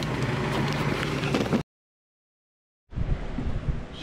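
Rumbling, crackling noise of a camera being jostled inside a moving truck, over a steady low engine hum. It cuts off abruptly about one and a half seconds in; after about a second of dead silence a quieter outdoor rumble begins.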